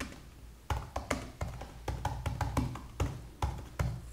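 Typing on a computer keyboard: about fourteen quick, unevenly spaced key clicks, starting about a second in.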